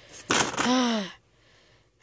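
A girl's breathy exhale, then a short groan that falls in pitch, a tired sigh of effort after heavy pushing.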